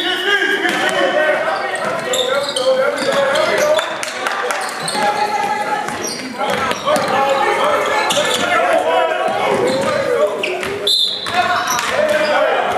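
A basketball bouncing on a hardwood gym floor, with players and spectators talking and calling out, all echoing in a large hall. A short, high whistle blast sounds about a second before the end.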